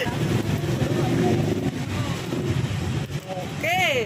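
Steady low engine rumble of a road vehicle running close by, with a short vocal exclamation near the end.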